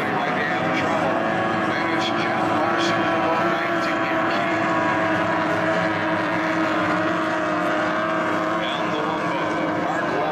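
Outboard engines of SST-60 tunnel-hull race boats running flat out at racing speed. Several steady, high engine tones overlap in a continuous drone.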